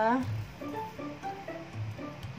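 Background music with short plucked guitar notes. A woman's voice trails off at the very start.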